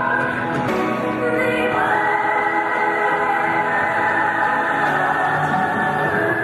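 Choir singing Christian gospel music in long held notes, with a step up in pitch about two seconds in.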